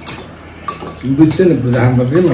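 Forks clinking and scraping on glass bowls and plates. About halfway through, a person's voice comes in and is louder than the clinks.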